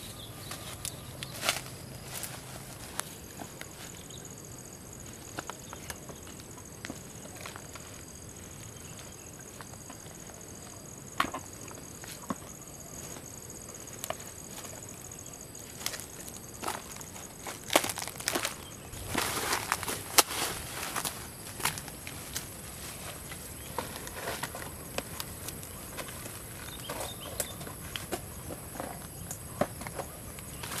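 Footsteps through grass and the dry crackle and snapping of a dead oil palm's rotting trunk fibre being handled. There are scattered clicks, and a denser run of crackling a little past halfway. A faint, steady high whine runs underneath.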